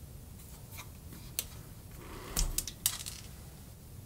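Wire strippers clicking and snipping as about a quarter inch of insulation is stripped off a heater wire: a few light clicks, then a louder cluster of snaps a little past halfway.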